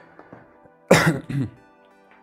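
A man clearing his throat: two short coughing bursts about a second in, over faint steady background music.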